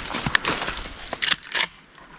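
Dry cattail stalks rustling, with a few sharp clicks and knocks as a shotgun is brought up and swung, dying down near the end.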